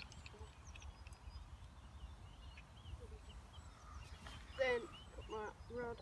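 Small birds chirping around open water over a low rumble of wind on the microphone. Near the end comes a louder, repeated run of calls.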